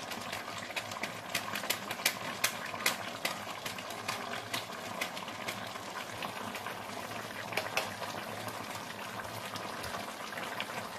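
Chicken curry bubbling in a metal wok on the stove: a steady hiss of the simmering masala gravy with irregular sharp pops and spits, several a second.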